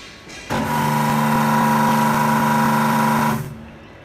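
Steam and pressure-washer barrel-cleaning machine switched on at its control panel, running for about three seconds with a steady hum and hiss. It starts suddenly about half a second in and cuts off before the end.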